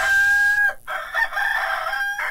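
Recorded rooster crowing as a sound effect: one long held crow that dips at its end less than a second in, then a second crow.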